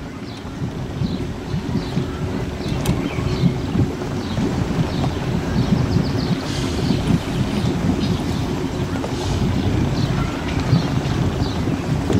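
Wind buffeting the microphone over the low, steady running of an escort motorboat's engine, with faint splashing of water.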